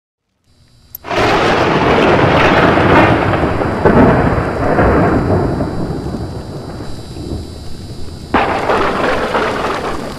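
Thunder sound effect under a logo intro: a sudden crash about a second in that rumbles and slowly fades, then a second crash near the end.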